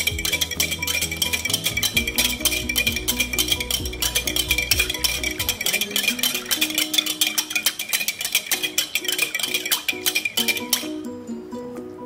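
A wire balloon whisk beating liquid in a glass bowl, its tines clinking rapidly against the glass, stopping sharply near the end. Background music plays throughout.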